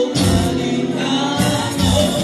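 Live band playing for dancing: a man sings into a microphone over electric guitar and deep bass notes, loud and steady.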